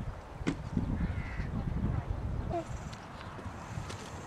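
Hoofbeats of a horse cantering on grass, dull thuds through the first half, with a short call about two and a half seconds in.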